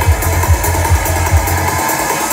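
Electronic dance music from a DJ's festival sound system: a steady kick drum about two and a half times a second over a rolling bassline. The kick and bass drop out near the end.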